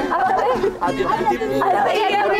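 Speech only: several voices chattering and talking over one another.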